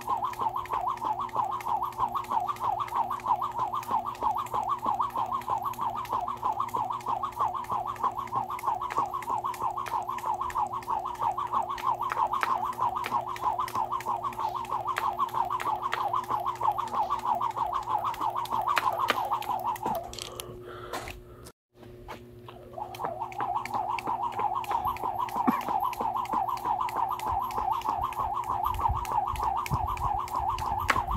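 Skipping rope turning fast: a rhythmic whirr with a click as the rope strikes the ground on each turn. Just before the middle of the second half it slows and stops, goes silent for a moment, then picks up the same steady rhythm again.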